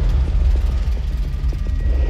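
A low, steady rumble with a faint haze above it.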